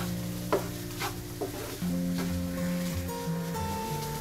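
Wooden spatula stirring and scraping chopped vegetables around a nonstick frying pan in several separate strokes. The vegetables are cooking over low heat, under soft background music.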